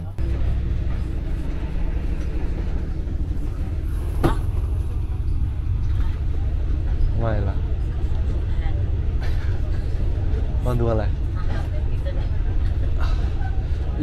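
Steady low rumble of a passenger train running along the line, heard from inside the carriage, with a single sharp click about four seconds in.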